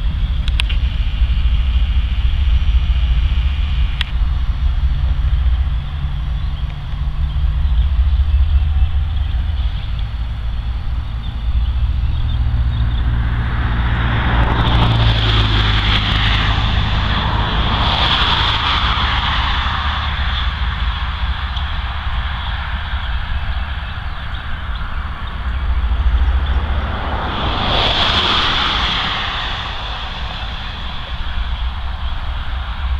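Norfolk Southern freight train's tank and covered hopper cars rolling past on the rails: a steady low rumble, with high-pitched squealing of steel wheels on the rails rising from about the middle of the stretch and again near the end.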